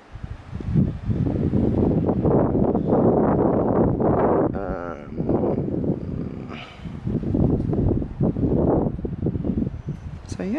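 Gusty wind buffeting the microphone, a loud, uneven rumble that swells and dips.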